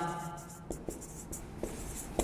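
Marker pen writing on a whiteboard: faint, short scratching strokes.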